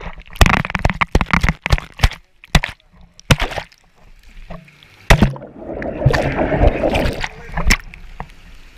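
Pool water splashing and sloshing close to the microphone: a string of sharp splashes in the first few seconds, then a longer stretch of churning water from about five seconds in.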